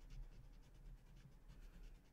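Faint scratching of a pointed shading tool rubbed in short, repeated strokes over a small paper drawing tile, filling in the shading.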